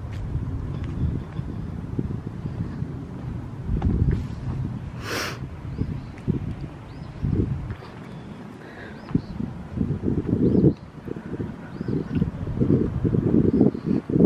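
Wind buffeting the microphone, with irregular footsteps over dry leaves and mulch. There is a single sharp crackle about five seconds in, and faint short bird chirps.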